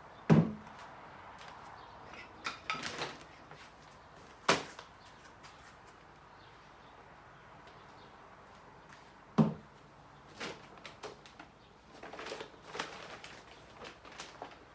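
Gym weights knocked down onto a wooden box, three sharp knocks with a dull thud: the loudest right at the start, one about four and a half seconds in and one about nine seconds in. Between them come softer clatters and rustles as the objects are handled and picked up.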